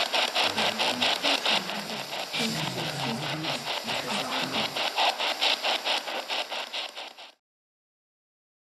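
Playback of a noisy field recording: loud hiss that pulses evenly about five times a second, with faint wavering low sounds underneath that are presented as whispers captured in an empty building. It cuts off abruptly near the end.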